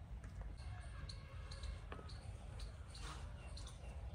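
Faint background sound: a steady low rumble with scattered small clicks and ticks.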